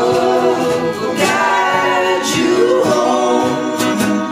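Several voices singing a slow song in harmony, holding long notes that slide between pitches, over acoustic guitar strums.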